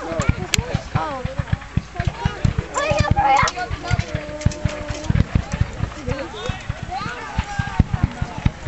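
Cavalry horses galloping over dry ground, a dense rapid patter of hoofbeats, with men's voices shouting over it.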